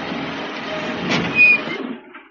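Truck engine running as the vehicle comes to a stop, with a brief louder noise about a second in; the engine sound drops away at the end.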